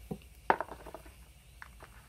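Handling noise from a white power cable and its plug being pulled loose and untangled: one sharp click about half a second in, then a few faint ticks.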